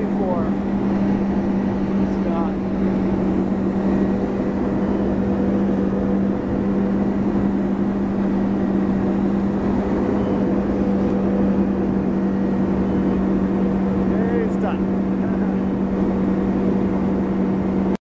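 Tow boat's engine running steadily under load, holding an even pitch at constant pulling speed, over the rush of water and wind.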